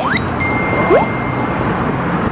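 Added editing sound effects: a quick upward whistle-like swoop at the start, a thin held high tone lasting about a second, and a second short upward swoop about a second in, over steady street noise.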